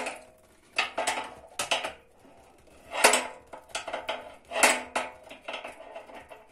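Metal clinks and scrapes of a wrench on the brass union nut of a gas water heater's heat exchanger pipe as the nut is loosened: a series of sharp clanks, loudest about three seconds in and again just before five seconds.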